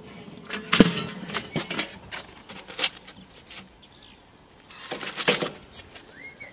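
Scattered light clicks and rustling, with a sharper knock just under a second in and a quick cluster of clicks near the end.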